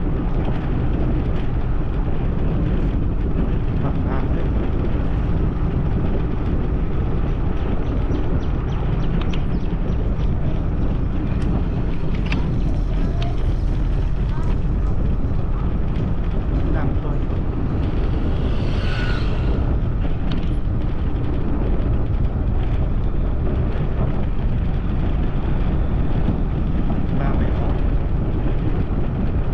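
Steady wind rumble on the microphone with road and engine noise from a moving vehicle. A brief higher-pitched sound comes about two-thirds of the way through.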